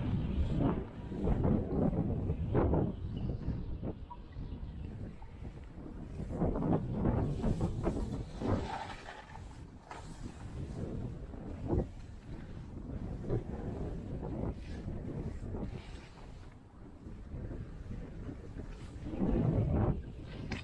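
Wind buffeting the microphone over skis hissing and scraping through snow, swelling and fading with each turn, with an occasional short sharp tap.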